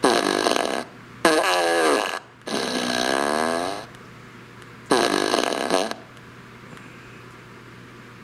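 T.J. Wisemen remote-controlled Fart Machine No. 2 (Boom Box Blaster) playing recorded fart sounds through its speaker: about four loud fart bursts in the first six seconds, each with a wavering, sliding pitch, then it falls quiet.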